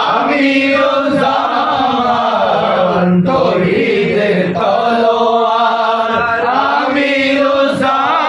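Several men chanting a devotional hymn together in long, held, wavering phrases.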